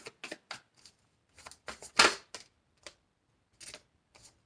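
A deck of tarot cards being shuffled by hand: an irregular run of short card flicks and slaps, the loudest about halfway through.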